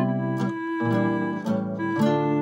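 Tango music: a Vangoa 100 EWI (electronic wind instrument) holding melody notes over a playalong backing track with plucked, guitar-like chords on a steady beat.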